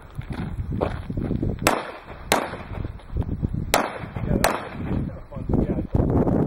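Four semi-automatic pistol shots fired in two pairs, the shots in each pair about two-thirds of a second apart, during a practical shooting course of fire.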